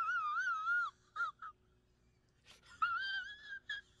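A high-pitched, wavering, whimper-like whine that lasts about a second, followed by two short squeaks. After a pause of about a second a second, shorter wavering whine comes, then a final squeak.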